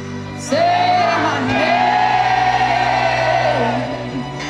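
Live indie-pop band with a female lead singer: a short sung note about half a second in, then one long high note held for about two seconds over a sustained band chord.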